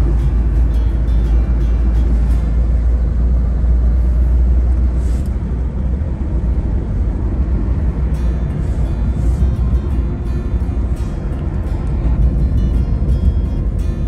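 Steady low road and engine rumble inside a moving car's cabin, heaviest for the first five seconds and then easing a little, with music playing over it.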